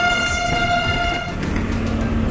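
Low engine and road noise from a motorcycle riding in city traffic. A steady high horn-like tone is held over it and cuts off about a second and a half in.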